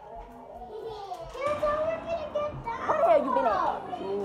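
Children's voices talking indistinctly, quiet at first and louder from about a second and a half in.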